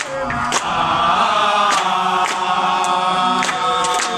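A group of young men singing a chant together in unison, holding long notes, with hand claps keeping time about every 0.6 seconds.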